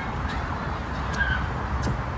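Steady outdoor background rumble and hiss, with a short bird chirp a little over a second in.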